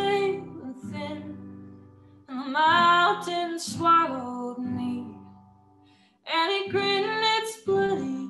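A woman singing a slow song to her own acoustic guitar, in phrases with short pauses between them: one phrase about two seconds in and the next about six seconds in, with the guitar sounding on through the gaps.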